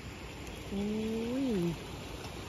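A woman's drawn-out exclamation "oy", about a second long, held level and then rising and falling in pitch.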